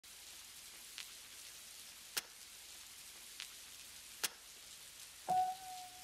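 Faint steady rain hiss, with four sharp drip ticks of water falling on a hard surface spaced through it. Near the end a single held musical note comes in.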